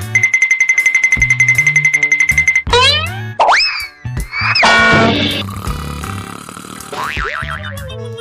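Cartoon comedy sound effects over background music: a fast rattling trill for about two and a half seconds, then a run of rising and falling boing whistles, and near the end one long whistle sliding down in pitch.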